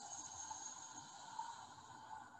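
A person's slow exhale through the mouth, a soft, steady breathy rush: the release of the last of three deep yoga breaths.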